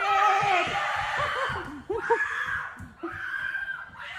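Boys and a man screaming and laughing in excitement, loudest in the first second or so and trailing off into laughter.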